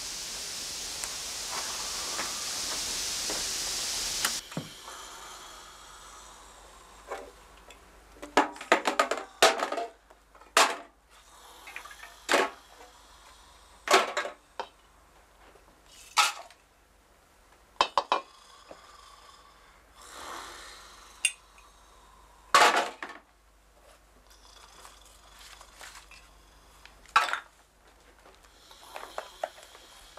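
Television static hissing, cutting off suddenly about four seconds in. Then a string of separate clinks and knocks every second or two, as objects are rummaged through and set down on a table.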